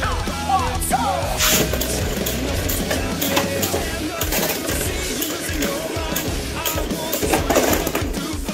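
Background rock music with a singing voice.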